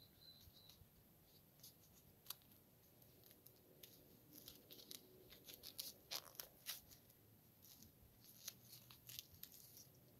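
Faint crackling and ticking of duct tape being pulled and wound around the joint of two sticks, in scattered small bursts that come thickest around the middle.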